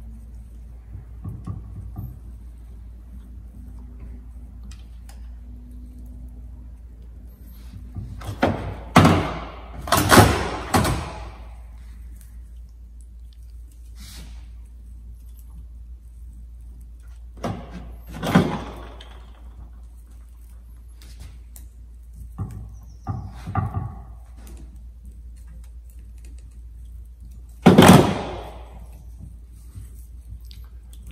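Occasional knocks and clatters of hands and tools working on the bonsai at the table as its old branch wire is taken off, over a steady low hum. There is a cluster of three loud ones about nine seconds in, one in the middle and a loud one near the end.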